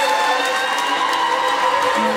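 Audience applauding and cheering while a string band plays long held fiddle notes.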